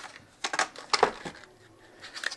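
A few sharp plastic clicks and light rattling as hands handle spark plug packaging on a wooden workbench, mostly in the first second and a half.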